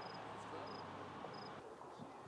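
An insect, cricket-like, chirping: three short, high chirps about two-thirds of a second apart over a faint, steady outdoor background.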